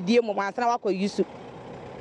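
A woman speaking in Twi for about a second, then a short pause filled with a steady low hum of distant road traffic.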